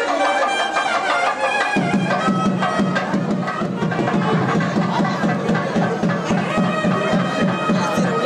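South Indian temple music: nadaswaram reed pipes playing held, wailing notes over a rapid, steady thavil drumbeat that comes in sharply about two seconds in.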